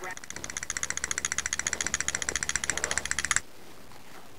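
A fast, even metallic ringing rattle, like an electric bell, that stops suddenly about three and a half seconds in.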